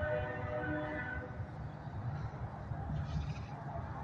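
A horn holding a chord of several steady tones, which stops about a second in, over a low steady rumble.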